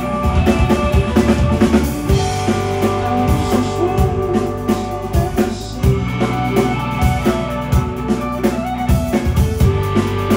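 Live rock band playing an instrumental passage: electric guitars holding sustained notes over a drum kit and bass.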